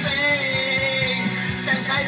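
A rock song playing loud, with a man singing along into a handheld microphone and holding one long note through the first half.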